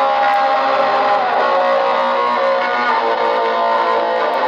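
Distorted electric guitar holding sustained, ringing chords with no drums, changing chord twice: the intro of a punk song played live.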